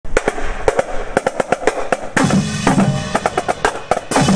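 Marching band drumline playing a cadence: quick, sharp snare strokes, then about two seconds in the bass drums and cymbals join and the sound grows fuller and louder.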